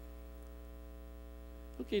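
Steady electrical mains hum in the audio, with a row of evenly spaced overtones above it.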